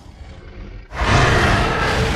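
A loud, noisy intro sound effect starts suddenly about a second in, with a deep rumble underneath, and fades away slowly.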